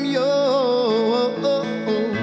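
A man singing a long, wavering note that sinks slightly in pitch, over guitar accompaniment.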